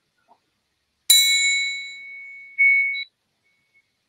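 A hand-held metal triangle is struck once about a second in and rings with several high, steady tones that slowly fade. The ringing swells briefly once more, then cuts off suddenly about three seconds in.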